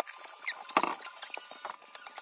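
Aluminium foil crinkling as it is handled and folded by hand: a run of small crackles and clicks, with one louder crinkle a little under a second in.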